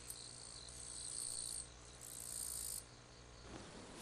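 Crickets chirring faintly in two high-pitched trills of about a second each. A soft rustling sets in near the end.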